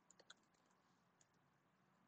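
Near silence, with a few faint computer keyboard clicks in the first half-second as code is typed.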